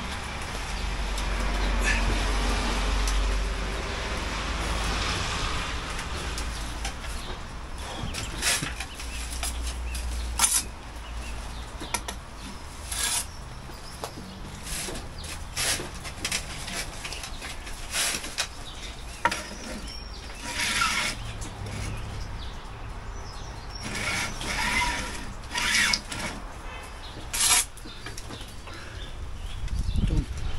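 Scattered short scrapes and knocks of hand work on a brick porch opening, around the new lintel and mortar joints. A low rumble runs through the first ten seconds or so.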